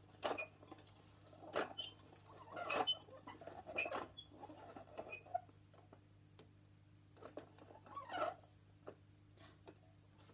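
Plastic teaching clock's hands being turned by hand: irregular scratchy rubbing and small clicks, coming in short spells with pauses between, over a faint steady low hum.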